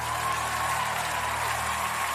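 Audience applause, an even wash of clapping that swells in at the start, over a low sustained chord left ringing at the end of a song.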